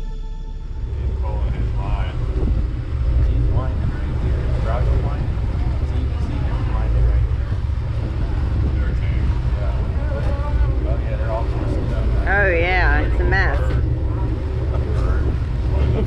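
Boat engine running under way with a steady low rumble, and indistinct voices calling out over it, loudest about three-quarters of the way through.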